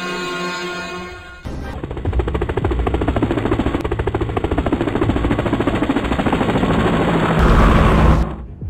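Background music with held tones, then from about a second and a half in a loud, fast, rapid-fire rattle like machine-gun fire. A heavy low thud comes near the end.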